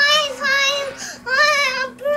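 A young girl singing in a high voice, holding two long notes with a short break between them.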